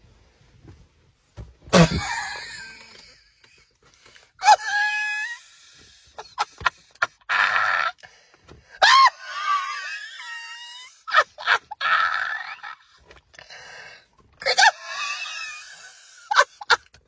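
A person's wordless, high-pitched shrieks and gasps in about half a dozen short outbursts, the pitch sliding up and down.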